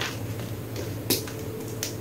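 Dry reformed gym chalk crunching and cracking as gloved fingers squeeze and crumble it. There are two short, crisp snaps, one about a second in and one near the end.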